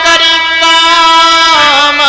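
A man singing a long held note in a devotional song over steady sustained accompaniment, the melody dropping in pitch about one and a half seconds in.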